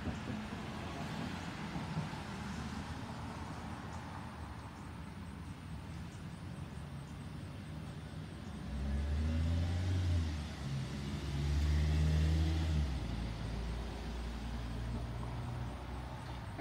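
A motor vehicle's engine rumbling past: a low, steady background that swells into a loud rumble about nine seconds in and eases off after about thirteen seconds.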